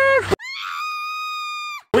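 A high-pitched scream held for about a second and a half, rising at the start and falling away at the end. It sits on dead silence with no ambient sound, as a scream sound effect edited in.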